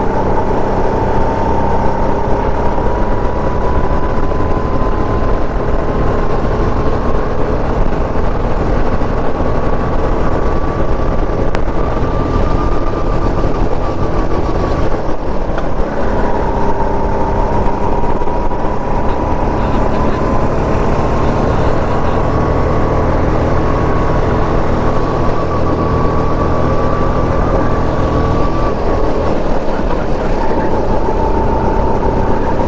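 Go-kart motor running at speed, heard from the driver's seat: its pitch climbs slowly along the straight, drops sharply about halfway through as the kart slows for a corner, then climbs again and drops once more near the end. A steady low rushing noise runs underneath.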